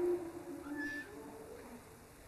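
A lull between chanted phrases of a church blessing: faint, low voices with a brief high squeak about a second in.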